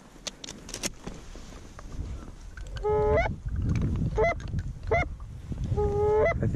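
Canada geese honking: a run of loud, sharply breaking honks that starts about halfway through, about four in three seconds, over a low rumble.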